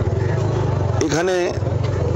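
A vehicle engine running close by with a low, evenly pulsing rumble, interrupted about a second in by a short burst of speech.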